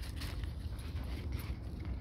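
Faint rustling and a few light clicks of an avocado branch and its leaves being handled, over a steady low rumble.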